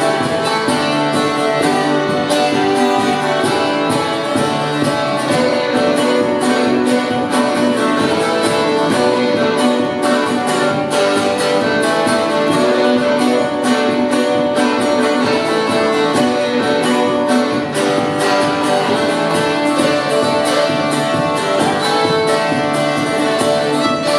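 Instrumental break in an English folk song: fiddle playing the melody over steadily strummed acoustic guitar and a second plucked string instrument, with no singing.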